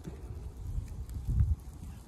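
Wind buffeting the microphone: an uneven low rumble that gusts strongest about a second and a half in, with a few faint clicks.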